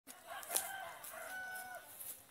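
A rooster crowing faintly: one long, drawn-out crow with a brief break in the middle.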